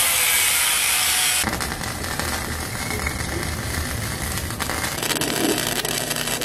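Wire-feed welder arc crackling and sizzling as steel frame tubing is welded. It is a steady hiss for about the first second and a half, then turns into a denser, lower crackle.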